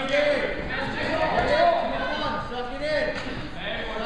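Several people's voices calling out and talking over one another in a gymnasium hall, shouts from coaches and spectators.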